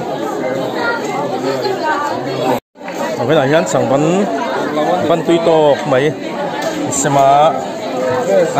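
Several people talking at once in lively, overlapping chatter. The sound drops out completely for a moment about two and a half seconds in.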